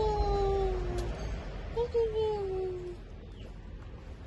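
A piglet's two drawn-out, whining calls, each falling slowly in pitch and lasting about a second; the second comes about two seconds in.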